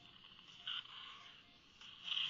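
Faint, steady hiss of a surgical suction tip in the mouth, with a brief louder slurp about 0.7 seconds in.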